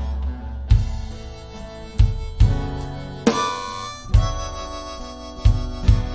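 Live band music: a harmonica playing the melody over acoustic guitar, with drum kit hits at uneven intervals.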